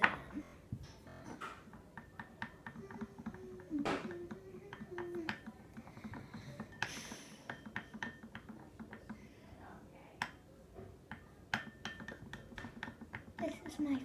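Irregular quick clicks and taps of a utensil stirring Pantene shampoo and salt slime in a glass dish, some taps leaving a brief ring from the glass.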